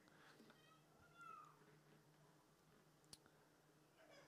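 Near silence: room tone, with a faint, brief, high-pitched falling squeak about a second in and a faint click a little after three seconds.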